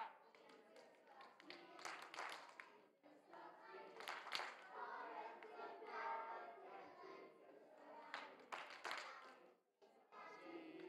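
Faint group singing of children and adults, heard at a distance, with a few sharp hand claps scattered through it.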